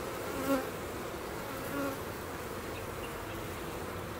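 Honey bee colony humming steadily over the open frames, with single bees buzzing close past twice, about half a second and just under two seconds in. It is the calm hum of a queenless colony that has just been given a frame of eggs to raise a new queen from.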